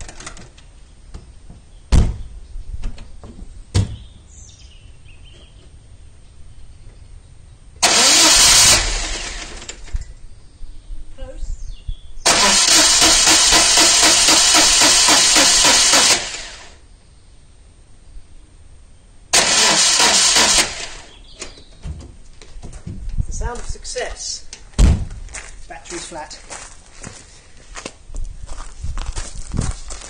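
Citroën 2CV's starter motor cranking its air-cooled flat-twin engine in three tries, a short one, a longer one of about four seconds and another short one, without the engine starting: the battery is too run down from earlier cranking. A few sharp knocks come before and after the cranking.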